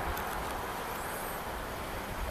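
Steady outdoor street noise: a low rumble under an even hiss, with no distinct events, and a faint high chirp about a second in.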